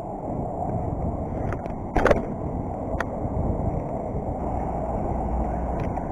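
BMX bike rolling over pavement with wind on the microphone, a steady rumbling noise. About two seconds in there is a loud, short rattling thump from the bike, and a single sharp click a second later.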